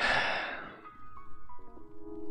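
A loud exhaled sigh straight into a close microphone at the very start, fading out within about a second, over quiet background music.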